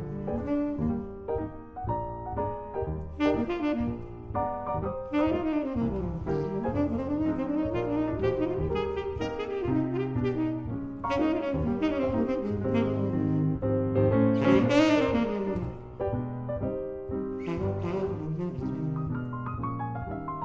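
Live jazz on a Yamaha grand piano and tenor saxophone. The piano plays dense chords and quick runs up and down the keyboard.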